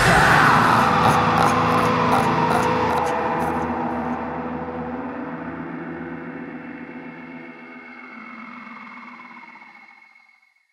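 A rock band's final chord left ringing and slowly dying away over about ten seconds.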